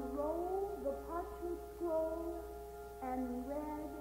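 Orchestral music with a soprano voice singing short sliding phrases over a sustained chord.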